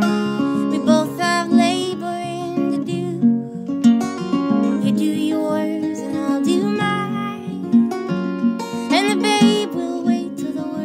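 A woman singing a folk ballad to her own acoustic guitar, the guitar playing a steady pattern of plucked notes under the voice, her voice sliding up about nine seconds in.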